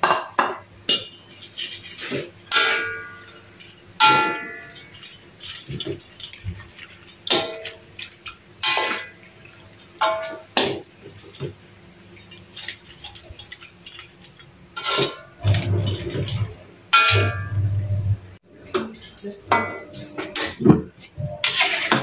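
Metal utensils knocking and clinking against an aluminium wok. A perforated metal ladle strikes the rim and sides again and again, and several of the knocks ring briefly like struck metal.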